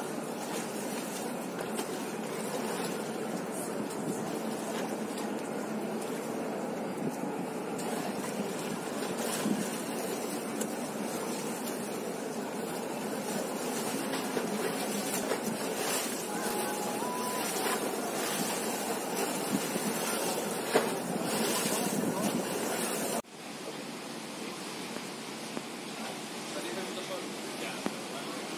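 River Thames water washing and splashing over stone embankment steps, a steady rushing noise with wind on the microphone. About three seconds before the end it cuts to a quieter, steadier river ambience.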